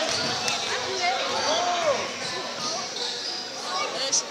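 Basketball being dribbled on a gym floor during a game, with spectators talking and calling out.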